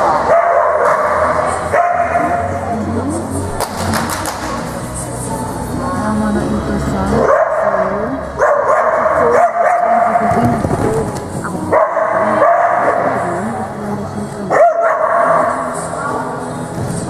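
A dog barking repeatedly over background music, the barks coming thicker in the second half with a loud one near the end.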